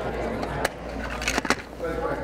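Overlapping conversation of several people talking quietly in pairs at once, with a steady low hum under it. A few sharp clicks or knocks come through, about two-thirds of a second in and twice around a second and a half in.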